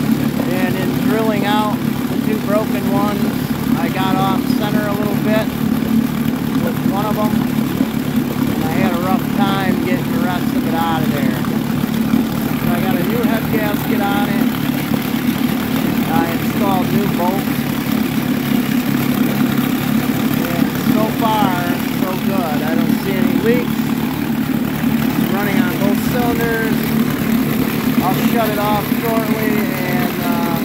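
1957 West Bend 7.5 hp two-cylinder two-stroke outboard running steadily in a test tank. It has just been refitted with a new head gasket after two snapped head bolts were repaired, and is being run to check for water getting into the cylinders.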